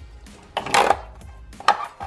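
Hard plastic aquarium filter parts being handled and pushed into place: a short scrape a little past halfway, then a sharp click near the end.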